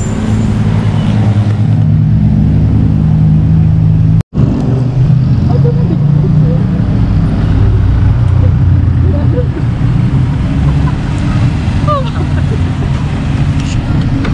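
Road traffic with a nearby motor vehicle engine running, a loud, steady low rumble. It cuts out for an instant about four seconds in.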